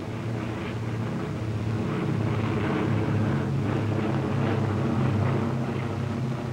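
Propeller aircraft engines of a fighter formation droning steadily, swelling gradually louder as the planes dive.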